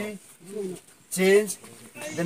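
A man's voice counting aloud in short, evenly spaced syllables, roughly one every second, timing a held stretch.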